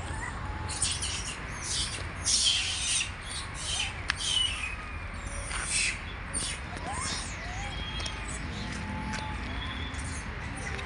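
High-pitched animal calls: a run of short, harsh squawks and quick chirps, thickest in the first six seconds and sparser after, over a steady low rumble.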